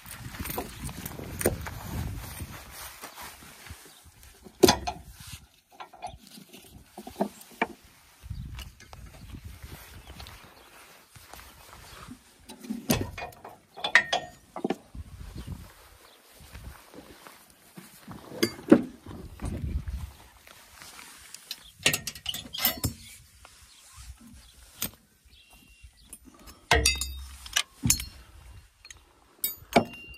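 Boat-trailer tie-down straps being unfastened and unhooked: scattered clicks, metal clinks and knocks with handling rustle.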